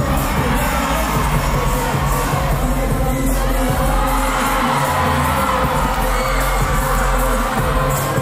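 Loud dance-performance music with a low beat, with an audience cheering and screaming over it.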